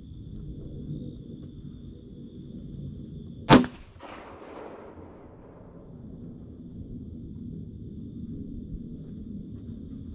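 A single rifle shot from a Benelli Lupo HPR bolt-action rifle in .308 Winchester, about three and a half seconds in, its echo dying away over a second or so. This is the shot that brings down a young wild boar.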